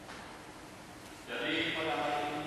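A person speaking, starting about halfway through, over faint steady room noise.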